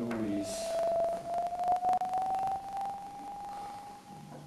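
A single long held note, thin and almost pure, rising slowly and evenly in pitch, with a few faint clicks about halfway through.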